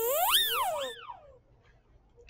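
Sound effect from a block-coding maze game: a tone that glides up and falls back, followed by a shorter second swoop, as the bee finishes collecting the last nectar and the puzzle is solved.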